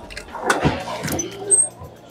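Trunk lid of a Daewoo Nexia sedan being unlatched and lifted open, with a few short clicks and knocks from the latch and lid.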